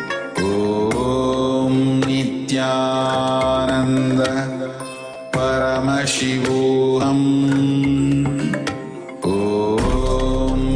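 Hindu mantras chanted in long, held tones, each phrase sliding up into its pitch. The chant dips briefly about five seconds in and again near the end.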